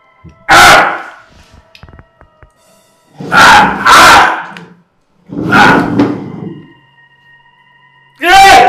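A man's loud cries of pain: four anguished wails, one about half a second in, two close together a little past the middle, and one more shortly after.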